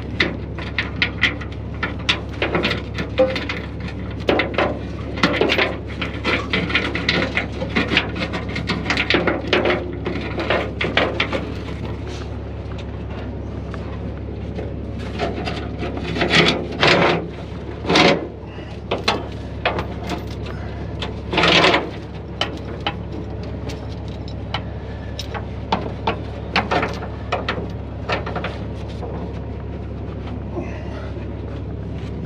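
Steel chain rattling and clinking as it is handled and wrapped around a truck's air-suspension bags and frame, busiest in the first half, with a few louder clanks past the middle. A steady low hum runs underneath.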